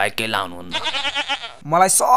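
A sheep-like bleat: one pitched call a little under a second long, about halfway through, between bits of a man's speech.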